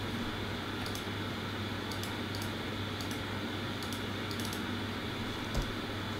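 About a dozen soft, irregular clicks from working a computer's keyboard and mouse, over a steady low hum.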